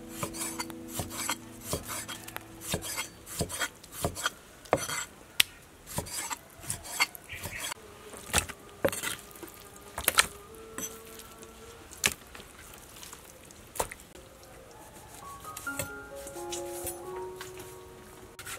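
Cleaver chopping through pork belly onto a wooden chopping board: sharp, irregular knocks, one to two a second, thinning out in the last few seconds. Soft background music with a simple melody, clearer near the end.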